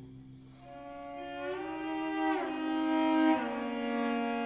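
Solo cello bowing sustained notes that grow from soft to loud, the upper voice sliding upward in pitch about halfway through while a lower note holds underneath.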